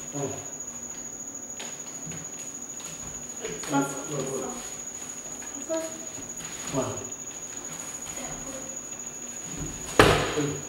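Bare feet thudding and scuffing on a hardwood floor during spinning-kick practice, with a few short knocks scattered through. A steady high-pitched whine runs underneath throughout.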